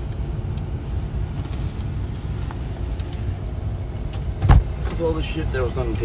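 Steady low rumble of a car heard from inside the cabin, with one loud thump about four and a half seconds in and a voice starting just after it.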